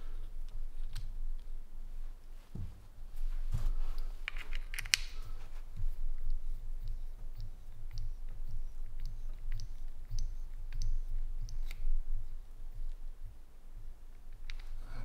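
Scattered light clicks and ticks of small metal parts as the valve stem nut is unscrewed by hand from a lantern valve and lifted off.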